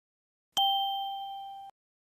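A single bell-like ding chime, an edited-in sound effect marking the change to a new section. It starts sharply about half a second in, rings with several steady pitches while fading, and cuts off suddenly after about a second.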